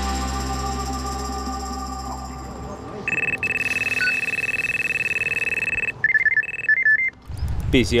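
Background music fading out, then an electronic carp bite alarm on the rod pod sounds one continuous high tone for about three seconds, followed by a second of rapid broken bleeps: the signal of a fish running with the line.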